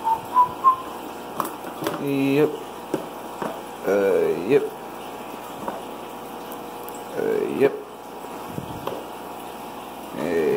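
A person whistling a few short notes, which stop about a second in, then making a few wordless hums, while plastic fish food jars knock and clink as they are picked out of a plastic storage drawer.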